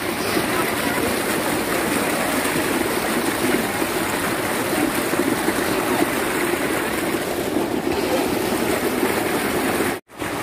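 Water gushing from an irrigation outlet pipe into a concrete channel: a steady rushing and splashing.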